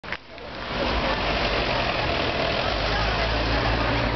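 Road traffic: a car passing on the street and steady traffic noise, with people's voices mixed in.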